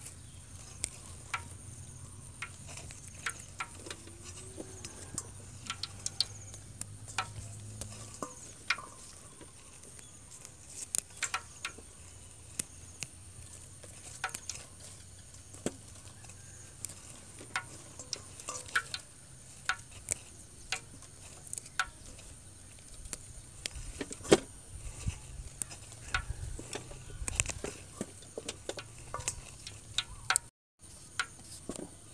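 Irregular small snaps and clicks of fresh herb leaves being picked off their stems by hand and dropped into a steel bowl, with a steady high insect drone behind. A low hum is heard for the first eight seconds or so.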